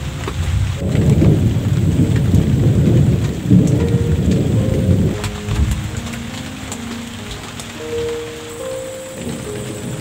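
A roll of thunder rumbling for about four seconds, about a second in, over steady rain pattering. Soft background music runs underneath.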